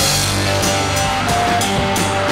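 Live band playing rock: electric guitars over a drum kit, with a sharp hit right at the start.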